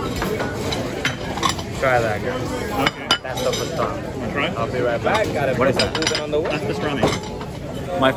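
Busy deli counter: background chatter of a crowd of customers, with clinks of plates and cutlery and a few sharp knocks.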